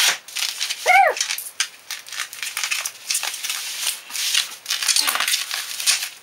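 Bubble-wrap and plastic packaging crinkling and rustling as it is handled and pulled off a long rail, with crackly irregular rustles throughout. About a second in, a short voice-like sound rises and falls in pitch.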